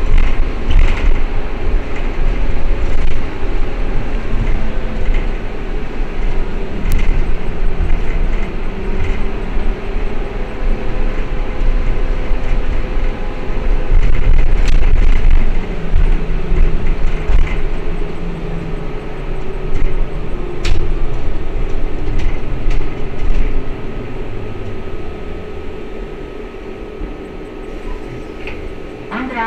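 Ride noise inside a moving Ikarus 412 trolleybus: the electric drive's hum and whine shift in pitch with speed over a steady road rumble, with scattered rattles from the body and fittings. It grows quieter over the last few seconds as the trolleybus slows.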